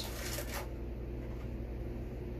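A brief crinkly rustle of a plastic pouch as a small measuring spoon scoops powdered saponin from it, then a steady low background hum.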